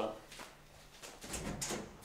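An apartment's front door being handled and unlatched: a few sharp clicks from the handle and latch, with a soft thump about a second and a half in.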